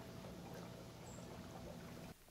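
Faint, steady running water of a garden koi pond, with a low hum beneath it.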